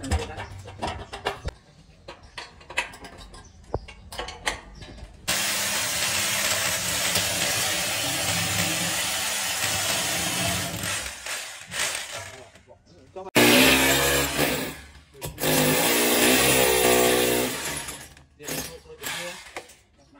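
Light metal clicks of a wrench on a bracket bolt. About five seconds in, a corded electric drill starts boring into the plastered wall and runs steadily for about six seconds. It stops, then runs again for about five seconds with a wavering whine.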